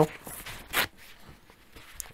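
Brief handling noise from a plastic syringe being taken apart and a paper kitchen towel: a faint swish, then a short sharp rustle just under a second in.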